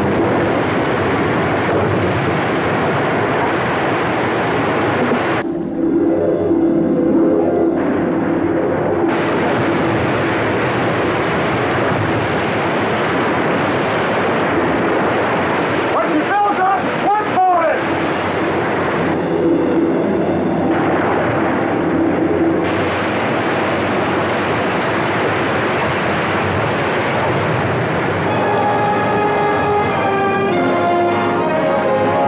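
Film sound effect of loud, steady rushing, churning water, mixed with an orchestral score, and a brief wavering sound about sixteen seconds in.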